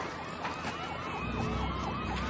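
Emergency vehicle siren in yelp mode, its pitch rising and falling rapidly about four times a second. A low rumble comes in underneath about halfway through.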